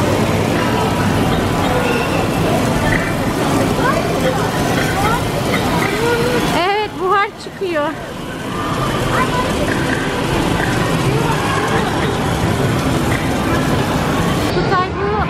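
Busy amusement-arcade din: game machines' music and sound effects overlapping, with voices in the background. A little before halfway it briefly drops and a wavering pitched tone comes through before the din resumes.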